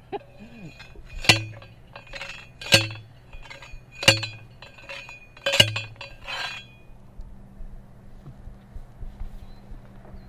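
Metal fence post being driven into the ground by hand: four heavy blows about a second and a half apart, each with a metallic ring and a lighter knock between them, stopping a little past halfway.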